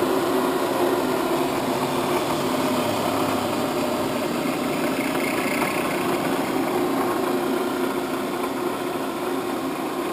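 Clausing Kondia vertical mill running, its 4 hp spindle motor and head giving a steady mechanical hum. A low undertone drops out a few seconds in.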